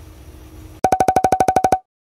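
A rapid run of about a dozen short electronic beeps at one steady pitch, lasting about a second and cutting off abruptly, after a faint steady hum.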